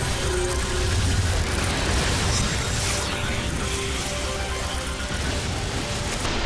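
Cartoon soundtrack music under a dense rushing, whirring sound effect of a magical transport through light, with a deep rumble about a second in.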